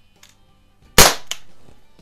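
A Crosman 1008 RepeatAir .177 CO2 pellet pistol fires one shot about a second in: a single sharp crack with a short fading tail, then a lighter click a moment later.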